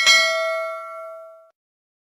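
Notification bell sound effect: a single bright ding that rings out and fades away over about a second and a half.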